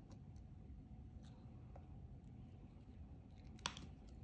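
Quiet handling of a small plastic USB connector: a few faint ticks, then one sharp click near the end.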